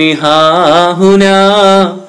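A man chanting a line of classical Arabic verse in a slow, melodic recitation, drawing out long wavering notes in two phrases that trail off near the end.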